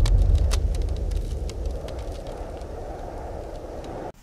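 The fading tail of a deep boom sound effect: a low rumble that dies away steadily, with faint scattered crackles, cutting off at the end.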